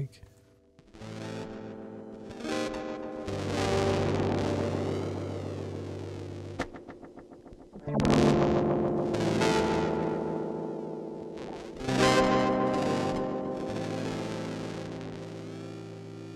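Electric guitar chords played through a Eurorack modular effects rack, with a bit-crushed, gritty sound and delay repeats fed back. Chords are struck about a second in, at about 2.5 and 3 seconds, again near 8 seconds and near 12 seconds; each rings out and fades slowly with a sweeping tone.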